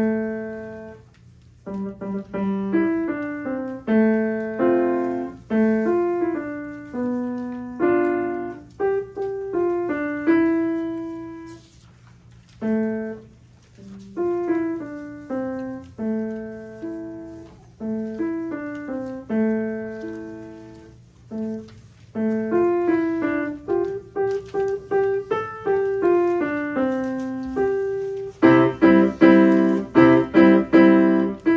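A grand piano played solo by a young student: a simple melody of single notes and chords, each note struck and ringing away, with a burst of louder repeated chords near the end.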